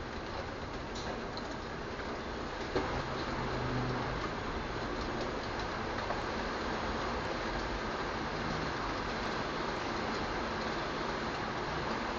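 Steady rain, with scattered drips ticking and one sharper tap about three seconds in.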